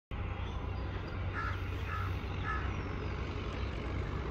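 Steady low outdoor background rumble, with three short faint beeping calls about half a second apart in the middle.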